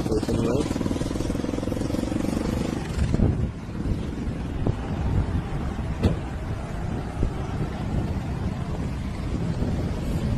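Wind buffeting the microphone with a low rumble, under a steady engine drone that fades away about three seconds in. A few faint knocks follow.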